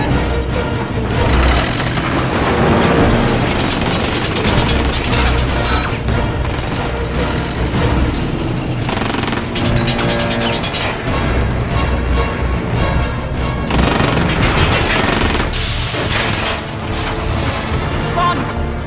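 Action-film soundtrack mix: music under repeated heavy booms and crashing impacts, with rapid bursts like gunfire.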